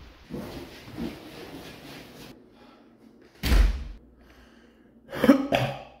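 A man coughing twice near the end, after a single sudden loud thump about halfway through.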